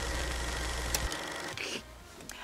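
A steady buzzing noise with a low hum and a faint high tone, a sound effect under the title-card transition, cutting off suddenly about a second in and leaving faint room tone.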